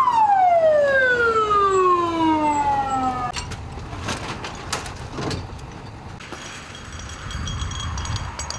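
Fire engine siren sounding one wail: a short rise, then a long falling wind-down that cuts off about three seconds in. After it comes a low engine rumble, a few metallic clanks of equipment, and a steady hiss in the last couple of seconds.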